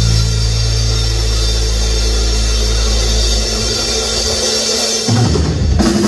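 Live rock band holding a long chord on electric guitars and bass under a ringing cymbal wash, the kind of held chord that ends a song. The low held notes die away about three and a half seconds in, and separate drum hits come in near the end.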